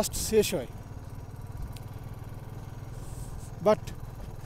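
Motorcycle engine running steadily while riding at an even road speed, a low unbroken drone.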